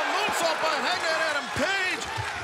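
Excited shouting voice over crowd noise in a wrestling arena.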